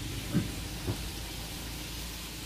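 Food sizzling steadily in a frying pan, with two faint brief sounds about half a second and one second in.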